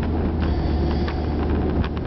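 Car running, heard from inside the cabin: a steady low engine hum with road noise, and a few faint clicks.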